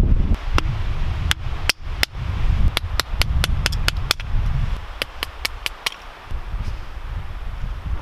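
Hatchet splitting dry wood into kindling against a rock: a series of sharp wooden cracks and knocks, a few spaced out at first, then quick runs of about five a second, stopping about six seconds in. Wind rumbles on the microphone underneath, heaviest in the first half.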